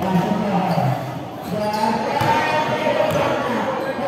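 A basketball bouncing on a painted concrete court, giving a few sharp knocks in the middle stretch, with voices or singing carrying on throughout.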